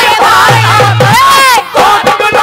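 Several voices crying out loudly together over the live ragni accompaniment, ending in one long, high held cry that rises and falls, with drum strokes underneath.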